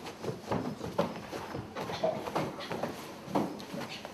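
Irregular footsteps and knocks on hollow wooden floorboards, several uneven thuds a second.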